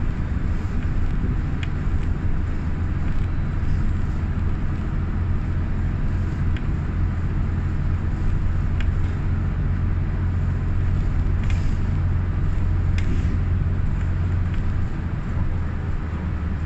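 Inside the cabin of a moving city route bus: a steady low engine and road drone, with occasional faint ticks and rattles.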